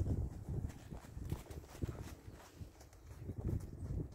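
Horse in working trot on a soft arena surface: regular hoofbeats, loudest as it passes close by and fading a little as it moves away.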